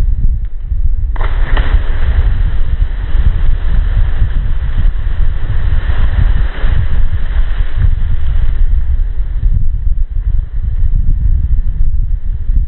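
Wind buffeting the microphone throughout. About a second in, a person plunges into a rock pool from a cliff: a sudden splash, followed by several seconds of hissing spray that fades away.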